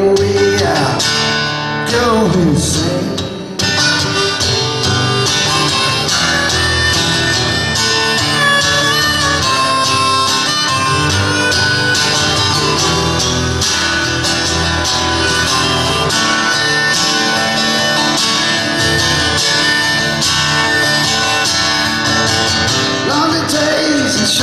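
Harmonica solo played from a neck rack over a strummed acoustic guitar, taking over from a held, sliding sung note that ends about three seconds in.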